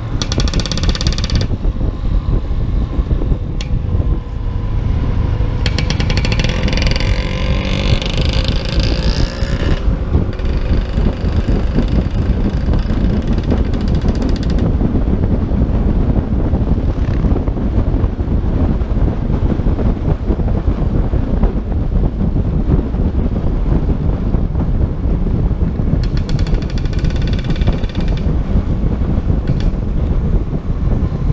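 Riding noise of a motor scooter on the move: steady wind rushing over the microphone, with the scooter's engine running underneath. A higher engine whine comes through a few times.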